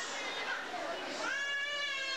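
A baby crying in long, high wails: one cry trails off at the start and another begins about a second in, over the murmur of a crowd.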